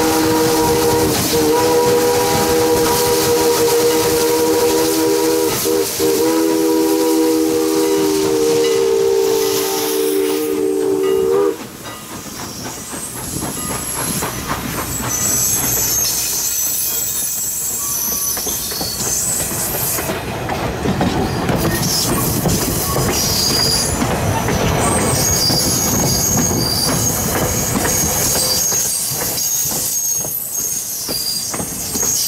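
Canadian National 89's Pennsylvania Railroad three-chime steam whistle blowing a long chord, with two short breaks, until it cuts off about eleven seconds in. Then wooden passenger coaches roll past with wheels clicking over the rail joints and thin high wheel squeals.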